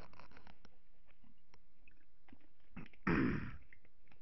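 A man coughs once, a short, loud cough about three seconds in, after a stretch of quiet with a few faint clicks.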